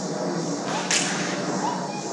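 Combat lightsabers' electronic sound-font effects: a steady low hum with short swing glides, broken about a second in by one sharp, whip-like crack.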